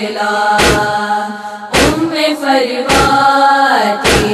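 Women's voices chanting a drawn-out, melismatic line of a Shia noha lament, the pitch held and then gliding. Under it a deep chest-beating (matam) thump lands evenly about once a second, three times, keeping the lament's beat.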